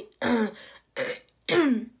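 A woman clearing her throat in three short bursts.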